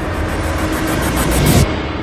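A loud rumbling, rushing noise, sound design for a horror trailer. It builds with a rapid flutter of pulses in its second half, then cuts off suddenly about a second and a half in, leaving a low hum.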